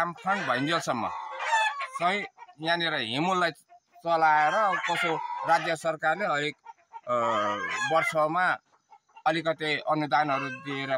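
Domestic chickens clucking, with a rooster crowing, under a man's speech.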